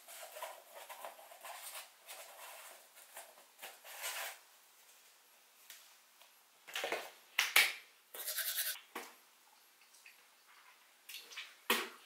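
Teeth being scrubbed with a manual toothbrush: wet, irregular scraping strokes, loudest about seven to nine seconds in, with a short sharp sound just before the end.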